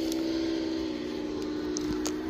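A steady low hum holding one pitch, with a fainter second tone just below it; the pitch dips slightly about halfway through.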